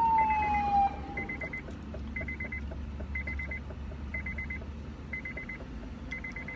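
A siren winding down, its pitch falling and fading out about a second in, while a car's warning chime repeats a quick run of four beeps about once a second over a steady low rumble.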